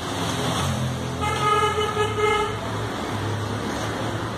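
Road traffic with a steady low engine rumble, and a vehicle horn sounding one long, steady blast from a little over a second in.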